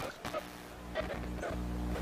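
A quiet, steady low hum with a few faint clicks near the start, heard while the ballpark's natural-sound microphone is not working.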